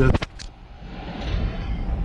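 Handling noise from a handheld camera being moved: a few quick clicks, then a low rumble.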